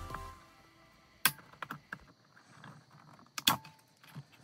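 Two sharp clicks about two seconds apart, with a few lighter ticks between, from pliers and wires being handled against a hoverboard's plastic frame. Faint background music runs underneath.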